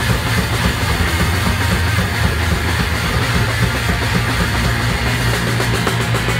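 Live rock band playing loud and without a break: electric guitars, bass guitar and drum kit.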